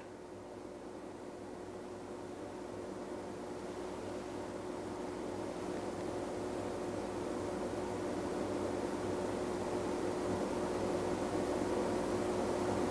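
A steady hum with a few held tones, slowly growing louder.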